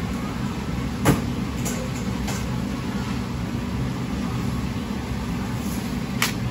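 Steady low hum of a commercial kitchen's ventilation, with one sharp knock about a second in and two lighter clicks soon after, from handling kitchen utensils.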